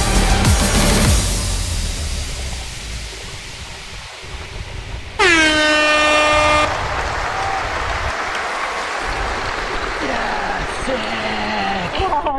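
Background music fades out in the first couple of seconds under a steady rushing noise. About five seconds in, a loud air horn sounds once, starting with a short downward slide, holding one steady note for about a second and a half and cutting off abruptly, a victory signal for a new record time. A voice comes in near the end.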